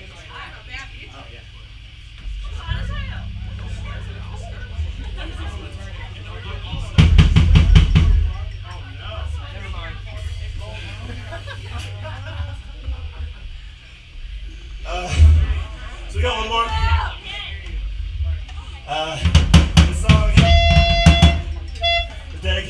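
Drum kit played in short loud bursts, a fill about seven seconds in and more near the end, between stretches of crowd chatter. A steady low hum runs under the first half and stops about halfway through.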